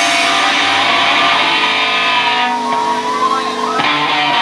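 A punk band playing live. Electric guitar and bass ring on with the drums mostly dropped out, a wavering high guitar tone slides about in the second half, and the full band comes back in with the drums just before the end.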